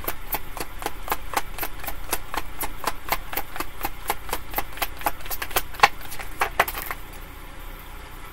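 A deck of tarot cards being shuffled by hand: a quick, irregular run of crisp card clicks and slaps, several a second, stopping about seven seconds in.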